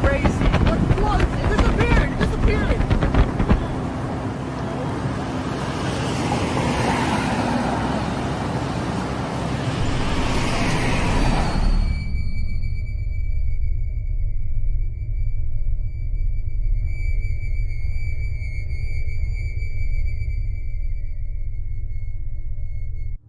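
Wind buffeting the microphone over the road noise of a moving car, with brief faint voices in the first few seconds. About twelve seconds in it cuts abruptly to a steady low electronic drone with a few held high tones.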